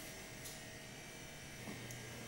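Faint steady electrical hum with a thin high tone over low room noise, and a couple of light clicks.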